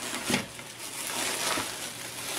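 Plastic bubble wrap rustling and crinkling as hands pull it apart, with one sharper crackle about a third of a second in.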